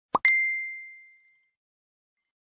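Logo intro sound effect: a short pop followed at once by a bright, clear ding that rings and fades out over about a second and a half.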